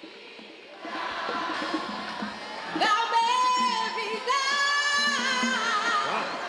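A woman singing a merengue a cappella into a microphone, with no instruments, over crowd noise. Her voice comes in about a second in and holds long notes, the last one wavering.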